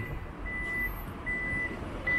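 Toyota Fortuner's power tailgate warning beeper sounding as the tailgate opens: a single high beep of under half a second, repeated at an even pace about every 0.8 s.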